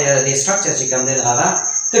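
A man's voice lecturing, pausing briefly near the end, over a continuous high-pitched trill.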